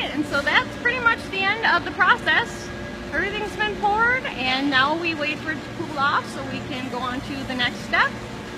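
Indistinct talking over a steady low machine hum in a foundry shop.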